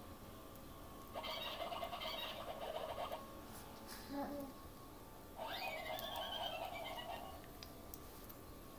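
A young baby's two drawn-out, high-pitched vocal sounds, each about two seconds long, a few seconds apart.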